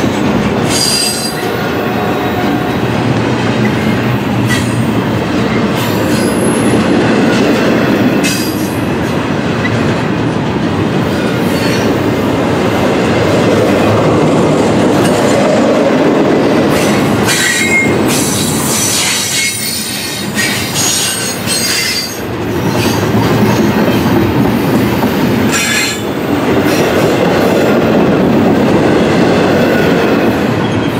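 Double-stack intermodal well cars rolling past close by: a steady rumble and clatter of steel wheels on rail, with high-pitched wheel squeals now and then.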